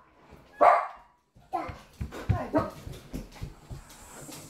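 A pet dog barks, one loud sharp bark about half a second in, followed by a run of quieter barks and yelps mixed with low bumps and thuds as the front door is opened.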